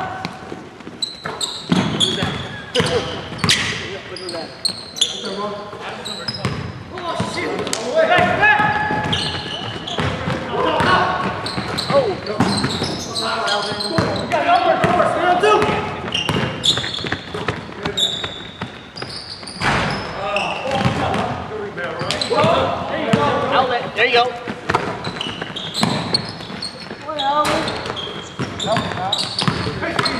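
Basketball game in a gymnasium: a ball bouncing on the court floor amid repeated sharp impacts and players' voices calling out, all echoing in the hall.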